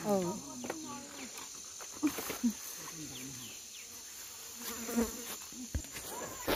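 A faint steady high-pitched insect drone from the fields, with a few brief faint voice fragments.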